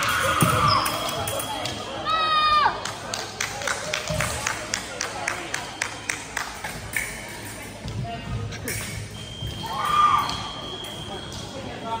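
Sounds of a fencing bout in a gym hall: a short shout about two seconds in, a run of quick taps from footwork and blades over the next few seconds, then a steady high electronic beep lasting a couple of seconds near the end, with another shout over it.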